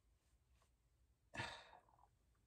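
Near silence broken about one and a half seconds in by a single short, breathy exhale from a man, like a sigh or a breathy laugh, fading quickly.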